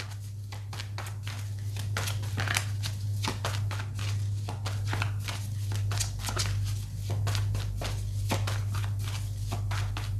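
A deck of tarot cards being shuffled by hand: a dense, irregular run of soft crackling card slaps, with a steady low hum underneath.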